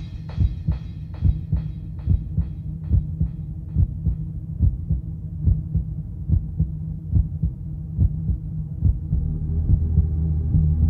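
Hard house track playing, stripped down to a steady four-on-the-floor kick drum at about two and a half beats a second over a low bass drone, with the treble filtered away as it goes on. A deeper, fuller bass note comes in near the end.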